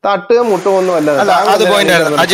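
Speech only: a voice starts talking right at the start and goes on loudly and quickly, with a steady hiss of noise behind it.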